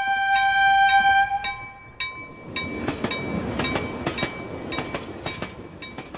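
A railroad crossing bell rings with evenly repeated strikes. Over it a train horn sounds one long chord for the first two seconds or so, then the rumble and clatter of a passing train comes in and fades toward the end.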